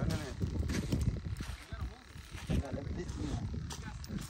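Voices talking over a low, irregular rumble of wind buffeting the microphone.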